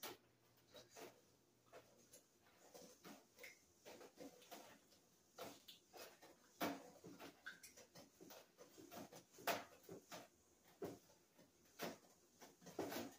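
Faint, scattered small clicks and taps of eggs being cracked and separated by hand over glass bowls, with eggshell and glass knocking now and then.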